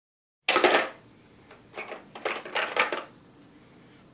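Hard plastic toys clattering and knocking together: a loud burst about half a second in, then a few shorter rattling bursts until about three seconds in.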